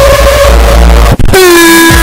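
Heavily distorted, clipped 'deep-fried' audio with no words. A steady held tone over booming bass runs for about a second and breaks off sharply. After a brief gap, a lower, buzzier held tone sounds, sinking slightly in pitch.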